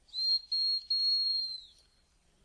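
Gundog training whistle blown in one high, steady note lasting about a second and a half, broken twice very briefly near its start, then trailing off.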